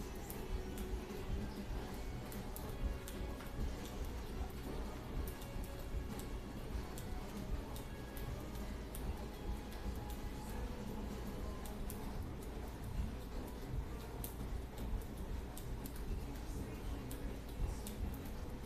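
Light footfalls of a person jogging in place, a quick run of soft taps about two to three a second, over faint background music.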